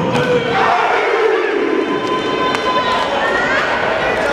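Crowd shouting and cheering, with loud yells and a rising call rising above the din near the end.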